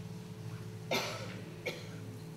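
A person coughs twice: a cough about a second in, then a shorter one soon after, over a steady low hum.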